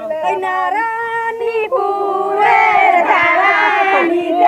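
Women singing a Bengali wedding folk song (biyer geet) together, with long held notes; more voices join and it grows louder about halfway through.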